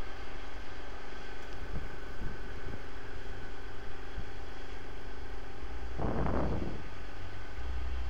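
Steady background machine hum with a low rumble, like an engine or motor running, with a brief rushing noise about six seconds in.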